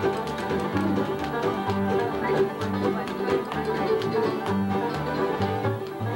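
Live bluegrass played on banjo and upright bass: quick picked banjo notes over steady low bass notes about twice a second.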